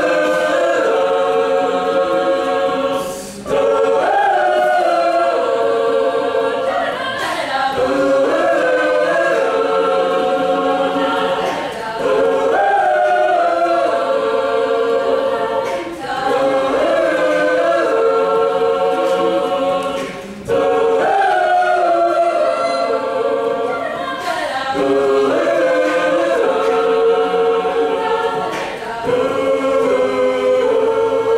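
Mixed-voice a cappella group singing a pop song in close harmony, sustained chords with the phrases breaking briefly about every four seconds.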